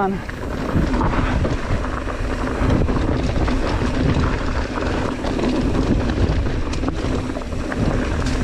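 Mountain bike descending a loose, rocky dirt trail: wind rushing over the camera microphone, with the tyres crunching over gravel and the bike rattling in a steady stream of small knocks.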